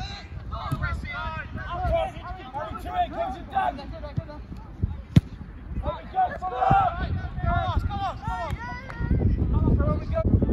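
Footballers' voices calling out indistinctly across the pitch, with a single sharp kick of a football about five seconds in, the loudest sound. A low rumble builds near the end.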